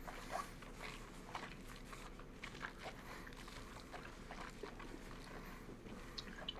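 Faint, irregular lip smacks and small mouth clicks of people tasting a sip of whisky, over a low steady background hum.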